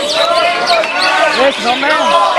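Caged cucak hijau (greater green leafbird) singing a fast, continuous run of sliding and arching whistled notes, with other birds' calls overlapping at several pitches.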